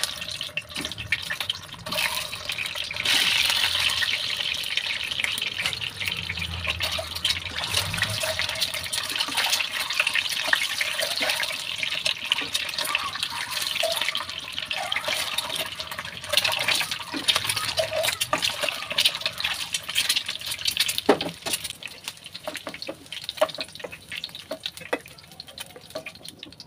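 Whole boiled eggs sizzling in hot oil in a nonstick kadhai: a steady crackling sizzle full of small pops. It starts suddenly as the first egg goes in and grows louder about two seconds in.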